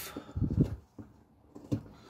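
Carving knife slicing a strip of bark off a green stick: a short scraping cut about half a second in, then a faint click or two.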